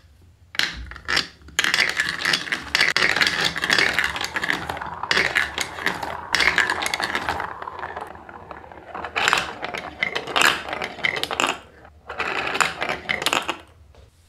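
Hard plastic balls rolling and clattering down a VTech plastic marble run's tracks: a continuous rattle for the first half, then separate bursts of clatter as they circle a funnel and run along the track into a row at the end.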